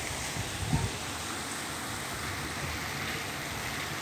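Steady background hiss with a couple of soft low bumps in the first second from the phone being handled.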